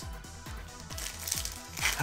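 Background music with a steady beat, and near the end the crinkle of a foil Yu-Gi-Oh booster pack wrapper being torn open by hand.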